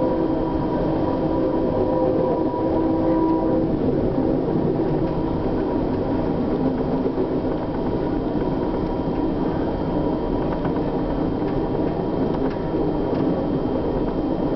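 Steady rumble of a passenger train running at speed, heard from inside the coach, with an empty coal train rushing past close alongside on the next track. A faint steady whine dies away about three and a half seconds in.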